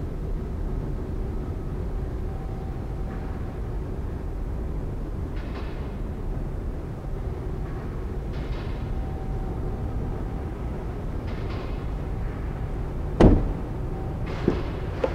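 Steady low background rumble, then near the end one sharp click as the exterior handle of a Ford F-150 SuperCrew's rear door is pulled and the latch releases.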